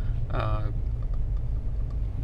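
Steady low rumble of a moving Mercedes 220d 4Matic heard from inside the cabin, road and engine noise at an even level. A brief voice sound cuts in about half a second in.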